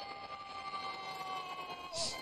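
Film soundtrack playing quietly: a steady high held tone, with a second tone below it, sliding slightly lower in pitch.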